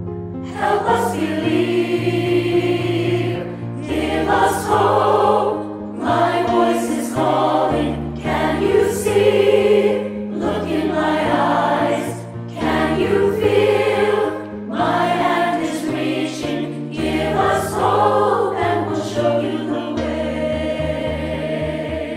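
A virtual choir of children and adults singing together in phrases that swell and fall about every two seconds.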